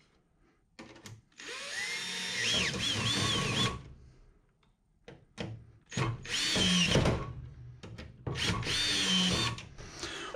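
Cordless drill driving bolts tight in short stop-start runs: brief blips and three longer runs of a second or two each, the motor whine dipping and rising in pitch as each bolt takes up load.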